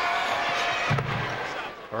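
Arena crowd noise during a free throw, with a single thud of the basketball about a second in.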